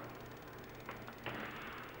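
Faint background hum and hiss of the narration recording, with two faint clicks about a second in.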